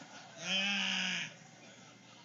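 A man's single drawn-out wordless vocal sound, held at one steady pitch for just under a second, voiced in character as a petulant God.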